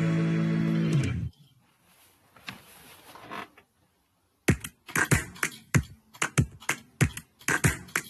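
Sustained synth chords of an intro jingle end about a second in. After a short near-quiet, sharp electronic percussion hits played on a drum-pad controller start about four and a half seconds in, in a quick irregular pattern of about four a second.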